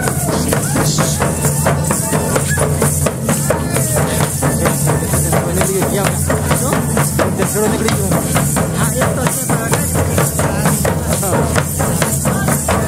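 Several large double-headed drums beaten with sticks in a fast, even rhythm, with metallic jingling over the beat. Voices call out here and there among the drumming.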